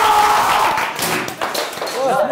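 A small group clapping their hands, with several excited voices over the clapping in the first second.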